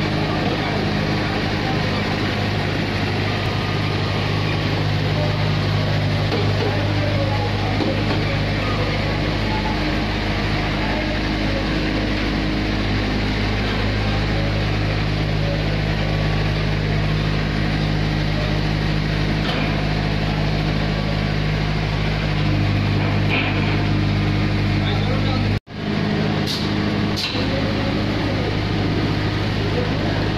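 Washing-powder production machinery running with a steady, loud hum and whir. After a brief break near the end, the running continues with a few sharp clicks.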